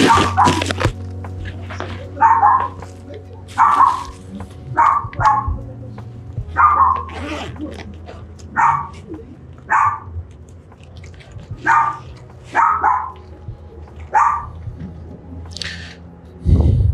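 A dog barking repeatedly, about a dozen short barks at uneven intervals of roughly a second, over a steady low hum.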